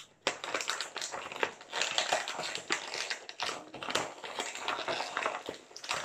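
Thin clear plastic blister packaging crinkling and crackling as it is squeezed and pulled apart by hand. The crackles are rapid and dense, with a short lull a little past halfway.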